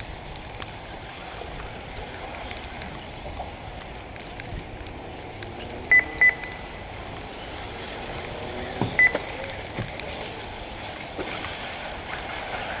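Short, high electronic beeps from the race lap-timing system: two beeps a third of a second apart about halfway through, then a quick double beep about three seconds later. Under them runs a steady background of outdoor noise and passing electric RC buggies.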